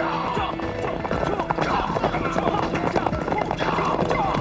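Horses galloping, with a rapid clatter of hooves and horses neighing, over background music.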